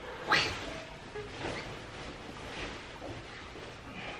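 Nylon jacket rustling and swishing as it is pulled over the head and onto a body already in many layers, with one sharp, loud swish about a third of a second in and softer rustles after.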